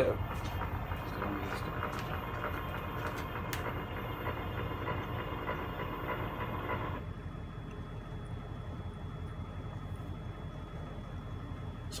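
CNC-converted Bridgeport milling machine running an engraving program: its ClearPath servo motors and ball screws drive the axes with a steady whine while the Tormach engraving tool traces its path. About seven seconds in, the whine drops away abruptly, leaving a lower, steady hum.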